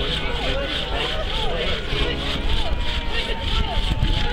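A hand saw rasping through a wooden log in quick, even strokes, with people's voices around it.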